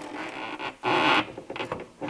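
Light clicks and scrapes of a spanner and bolt at a car's bonnet hinge during bonnet fitting, with a short rush of noise about a second in and a few sharp clicks near the end.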